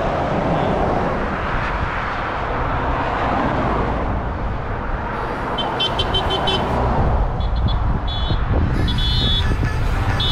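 Cars driving past on a highway with steady tyre and engine noise. From about halfway on, horns toot in several quick runs of short beeps.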